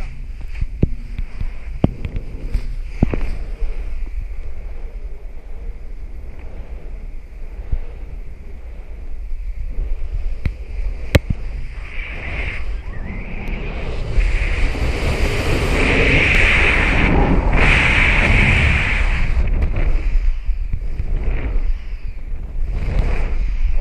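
Wind rushing over an action camera's microphone on a paramotor in flight. It swells louder about two-thirds of the way through as the wing is flown through acrobatic manoeuvres, and a few sharp clicks come in the first few seconds.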